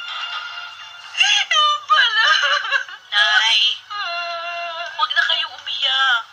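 A high, thin singing voice with music, in short gliding phrases and one longer held note about four seconds in.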